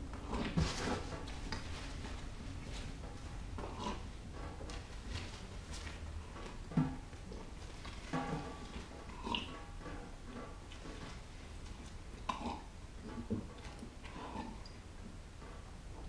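A man speed-eating marshmallow Peeps: quick, irregular gulps of water, chewing and swallowing with wet mouth noises and grunts, over a low steady hum.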